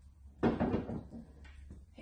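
A wooden knock as items are handled and moved on the shelves of an antique wooden cabinet, followed by a few fainter taps and clicks.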